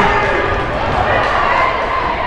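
Steady crowd din and court noise in a school gymnasium during basketball play.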